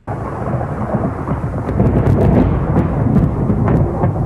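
Thunderstorm: low rolling thunder over steady rain, starting suddenly, with scattered sharp crackles.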